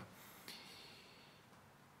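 Near silence: room tone, with a faint breath through the nose about half a second in.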